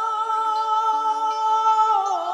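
Background music score: a long chord held steady, carried by a wordless humming voice.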